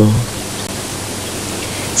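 Steady hiss with a faint low hum beneath it, after a voice breaks off at the very start.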